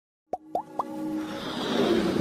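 Animated intro sound effects: three quick rising blips about a quarter second apart, followed by a swelling whoosh that builds up.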